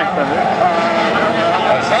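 125-class crosskart engines running at speed, heard as a steady, high engine note that wavers slightly.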